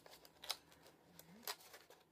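Faint clicks and crinkles of stiff textured cardstock being handled as paper tabs are pushed into their slots, with two sharper clicks about half a second and a second and a half in.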